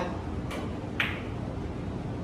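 Two clicks of billiard balls knocking together, a faint one about half a second in and a sharper, ringing one about a second in, over a steady hum of the hall.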